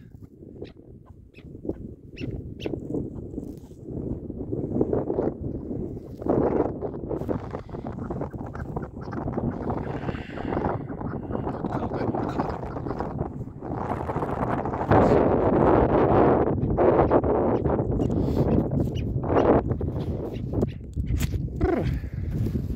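Chukar partridge held in the hand, giving harsh repeated clucking calls that are louder in the second half.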